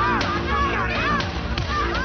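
About four sharp cracks in two seconds, heard over music holding a steady low chord, with high rising-and-falling cries between them.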